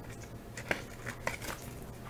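1980 O-Pee-Chee cardboard hockey cards being handled and flipped through by hand: a few faint clicks and light rustles, over a low steady hum.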